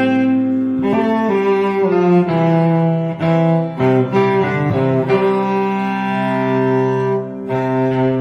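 Bowed cello playing the melody of a pop-song cover, sustained notes changing every second or so.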